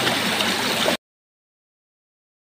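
Water splashing down over rocks from a small waterfall into a pool, a steady rushing hiss that cuts off suddenly about a second in.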